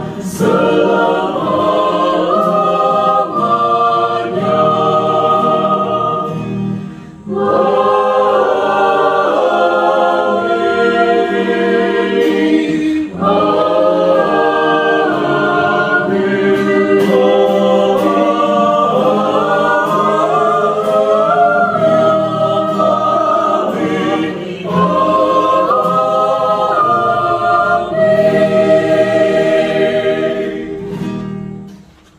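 Mixed four-part choir (soprano, alto, tenor, bass) singing a slow Indonesian Catholic hymn in harmony, in several phrases separated by short breaths.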